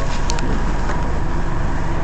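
Steady rumble of a city bus's engine and running gear heard from inside the passenger cabin, with a faint steady whine.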